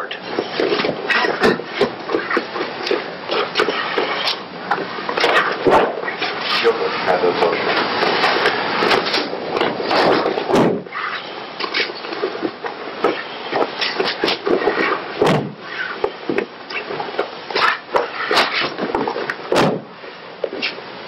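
Bodies thudding onto a training mat as jujutsu throws land, several sharp thuds a few seconds apart, over a constant noisy background with indistinct voice sounds.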